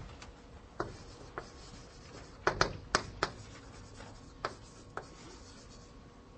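Writing on a board: a scattered series of short, sharp strokes and taps as an expression is written out.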